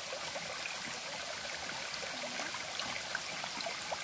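Shallow mountain stream flowing over stones, a steady trickling and babbling.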